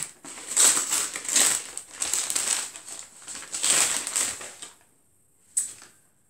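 Brown kraft paper bag rustling and crumpling as it is opened by hand, in several loud bursts. It goes nearly quiet after about four and a half seconds, with one short rustle near the end.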